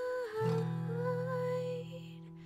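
A woman's voice singing a held, wavering melody over acoustic guitar, with a guitar chord coming in about half a second in and ringing on.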